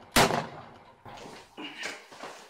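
A single loud gunshot just after the start, dying away quickly; it is the last of three shots fired in quick succession.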